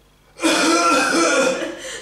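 A man doing a mock cough: loud, rough coughing sounds made with the voice, starting about half a second in. He is imitating audience members coughing through a quiet piano passage.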